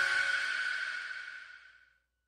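The last hit of a pop song ringing out: a crash with a high ringing tone, fading steadily to silence near the end.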